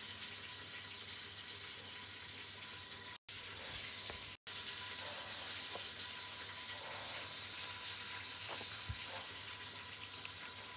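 A steady hiss with a few faint small clicks and mouth sounds as a child eats ice cream from a small cup with a plastic spoon. The sound cuts out completely twice, about three and four and a half seconds in.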